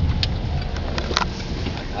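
Car interior noise while driving: the steady low rumble of engine and tyres on the road, with a few light clicks.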